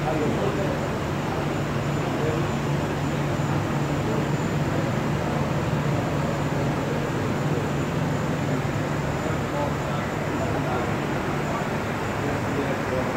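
MKS Sanjo P 25 SF label printing press running steadily: a constant low mechanical hum with a faint high whine above it.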